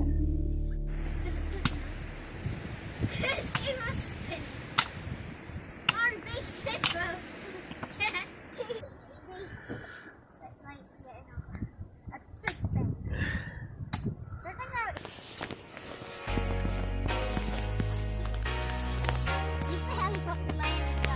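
Sharp, irregular knocks of a small hatchet chopping kindling on a wooden stump, with children's voices in between. Background music fades out about a second in and comes back near the end.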